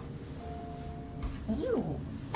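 A person's short wordless vocal sound, rising then falling in pitch, about three-quarters of the way in, a disapproving reaction. Before it, only faint room tone with a thin steady tone.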